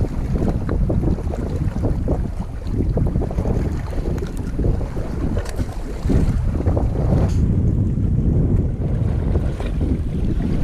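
Wind buffeting an action camera's microphone, a heavy low rumble that gets louder about six seconds in, over the wash of shallow water.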